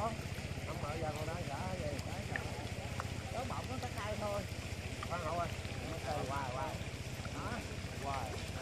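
A motor running steadily with a low, even pulse throughout, under distant voices calling back and forth.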